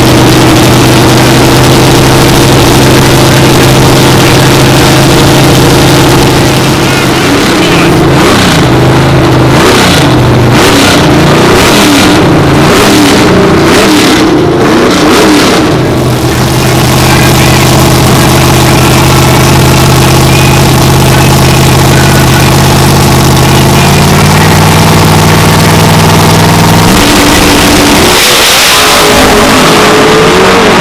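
Drag race car engines idling loudly, with repeated revs rising and falling in the middle. Near the end the engines climb sharply in pitch as the cars launch at full throttle.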